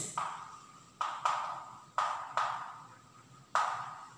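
Chalk writing on a blackboard: about six sharp taps and scratchy strokes, each fading away quickly, as a word is written out.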